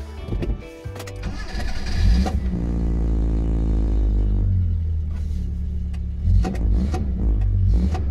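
Bedford Bambi camper's engine cranking and starting from cold with the choke out, heard from inside its sound-deadened cab. It catches about two seconds in with a rise in revs, then runs with a steady low drone, with another brief rise in revs later on.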